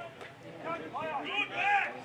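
Raised voices shouting during play, with loud calls about a second in and again near the end.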